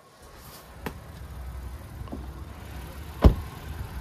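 A pickup truck's door shut with one loud, solid thump about three seconds in, after a couple of light clicks, over a low rumble.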